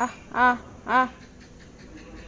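A person calling a dog with short 'ah' calls, three of them about half a second apart, each rising and falling in pitch.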